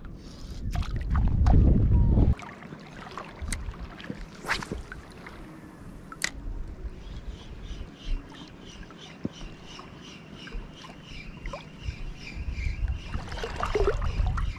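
Shallow sea water sloshing around a wading angler. A loud low rush fills the first two seconds and cuts off suddenly. Later, light even ticking, about four ticks a second, comes from a spinning reel being cranked to retrieve a lure.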